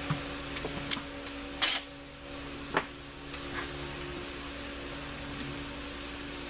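Shop fan running with a steady hum. A few light clicks and knocks of things being handled sound over it, with one short rustle about two seconds in.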